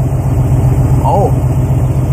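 A motorhome's engine idling steadily with an even low rumble, running smoothly on its newly fitted carburetor. A brief vocal sound from a man about a second in.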